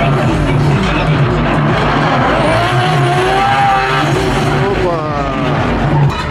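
Two drift cars sliding in tandem, their engines held at high revs with the pitch rising and falling, over the screech of sliding tyres.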